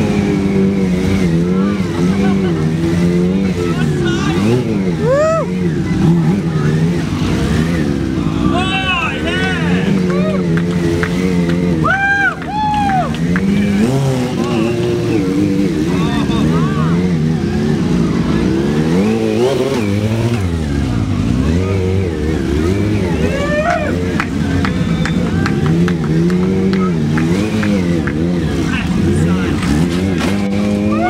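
Streetfighter stunt motorcycle engine revving hard, the throttle rising and falling constantly as the bike is ridden on one wheel. There are a few short high-pitched squeals about 9 and 12 seconds in.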